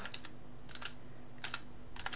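Typing on a computer keyboard: a few separate keystrokes, coming in quick pairs spaced well apart.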